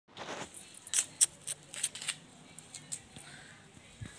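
A short rustle, then a quick run of five or so sharp, high clicks and scuffs about three or four a second, dying away after about two seconds.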